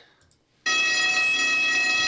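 A loud, steady tone of several fixed pitches sounding together from a film soundtrack. It starts abruptly about two-thirds of a second in and holds unchanged.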